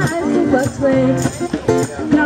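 A woman singing live to her own acoustic guitar, strumming in a steady rhythm.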